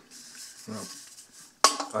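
An empty aluminium drink can set down on a wooden tabletop, making one sharp knock about one and a half seconds in. It follows a brief, faint rustle of the hand on the can.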